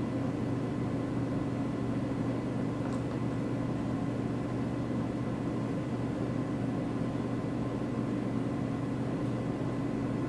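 Steady low hum of a cooling fan, even and unchanging throughout.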